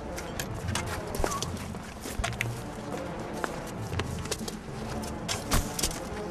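Film score music with a low, sustained bed, under irregular sharp clicks and rustles of movement.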